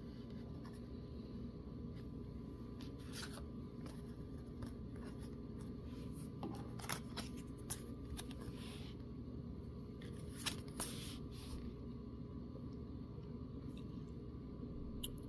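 Tarot cards being slid out of a face-down spread on a wooden table and picked up: faint, scattered card rustles and soft clicks in a few short bursts over quiet room tone.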